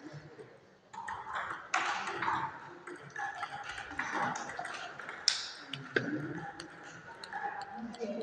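Table tennis ball clicking sharply off the bats and table during a rally, the loudest hits about five and six seconds in.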